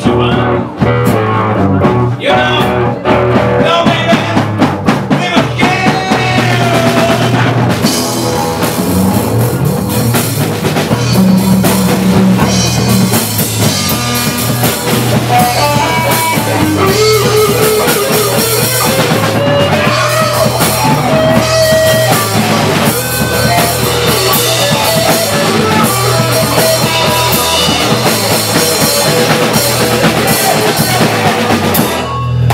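A rock band playing live on drum kit, bass and guitars. It starts sparse, and the full band with cymbals comes in about eight seconds in; later a lead line slides upward in pitch.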